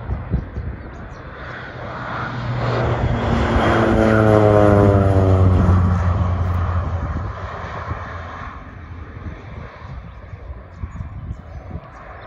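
Air Tractor AT-502B crop-spraying plane's turboprop engine and propeller making a low pass. The sound builds to a loud peak about four to five seconds in, its tones falling in pitch as it goes by, then fades away as it climbs off.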